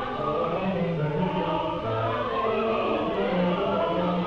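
Choir singing a classical choral work with orchestral accompaniment, the voices holding long sustained notes.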